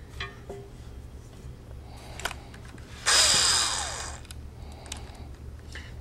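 A cordless drill run briefly about three seconds in, its motor whine falling in pitch as it spins down over about a second. A few light clicks and knocks come before it.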